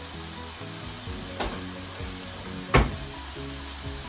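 Potato fries frying in hot oil in a pan, a steady sizzle, with two sharp clicks, the louder one nearly three seconds in. The fries are lightly golden brown and ready to come out.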